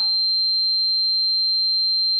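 A single steady high-pitched electronic tone, held at one pitch without change.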